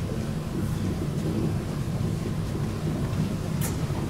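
Steady low hum and rumble of room tone in a lecture hall, with a brief click near the end.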